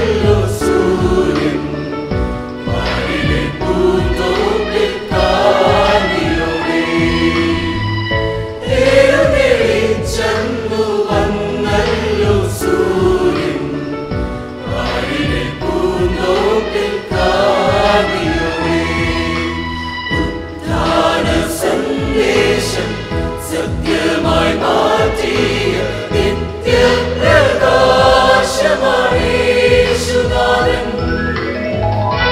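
Mixed choir of women and men singing a Malayalam Easter hymn, continuous and sustained through the whole passage.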